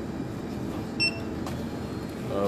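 A single short electronic beep about a second in, over a steady background hum in an airport terminal.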